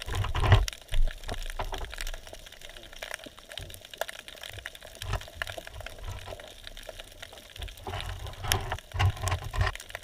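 Underwater ambience on a sandy seabed: scattered sharp clicks and crackles over a hiss, with low rumbling surges of water movement. The rumbling is strongest about half a second in and again near the end.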